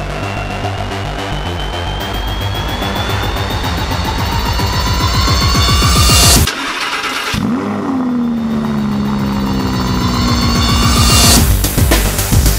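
Music with a rising build-up breaks off about six and a half seconds in, and the Lamborghini Huracán LP610-4's 5.2-litre V10 starts: a sharp flare of revs that falls back into a steady high idle, the cold start of a car that has stood overnight. The music returns near the end.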